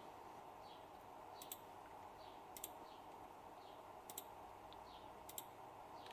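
Near silence with about four faint, sharp computer mouse clicks, a second or so apart, as open windows are closed and the PC is shut down.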